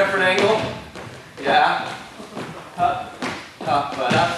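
Short vocal exclamations, four brief bursts about a second apart, over dance steps on a wooden floor.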